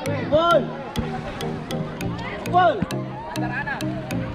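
Background music with a steady beat and a repeating bass line, with two short voice phrases rising and falling over it, one near the start and one about two and a half seconds in.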